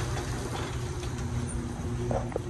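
Steady low mechanical drone with a faint, even higher tone above it.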